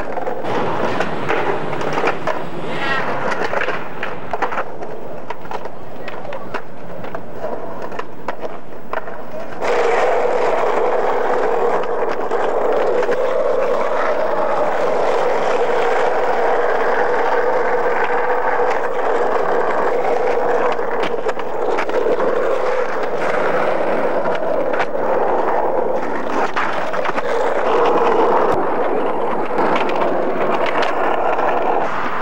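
Skateboard sounds: wheels clattering over brick paving with quick board clacks, then, about ten seconds in, a louder steady roll of urethane wheels on asphalt.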